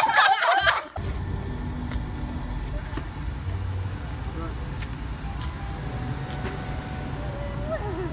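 A second of lively talk cuts off abruptly about a second in. Outdoor background noise follows: a steady low rumble with faint voices now and then.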